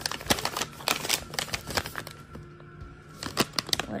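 Plastic dog-treat pouch crinkling and crackling as it is handled and turned over in the hand. The sharp crackles come in two clusters, through the first couple of seconds and again near the end.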